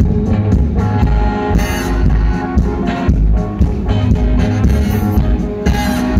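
Live rock band playing: electric guitars over a drum kit, with a cymbal crash a little under two seconds in and another near the end.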